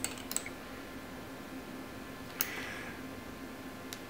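A few light metallic clicks near the start and one sharper clack about two and a half seconds in, as a small steel rod is handled and fitted at the mini lathe's chuck, over a faint steady hum.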